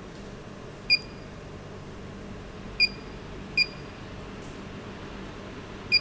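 Touch-screen operator panel beeping four times, one short high beep for each press of an on-screen button.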